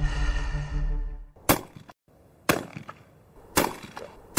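Dramatic background music that stops about a second in, followed by three sharp shotgun shots about a second apart.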